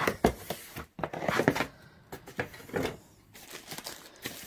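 Cardboard packaging of a robot vacuum being opened and handled: a sharp knock just after the start, then several bouts of scraping and rustling as the lid and inner packing are lifted.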